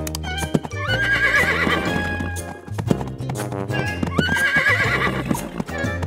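Background music with a steady beat, with a horse whinny sound effect twice: a sharply rising, wavering call about a second in and again about four seconds in.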